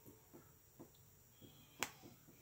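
Small plastic LEGO pieces handled and pressed together between the fingers: a few soft clicks, then one sharp snap near the end as a piece clicks into place.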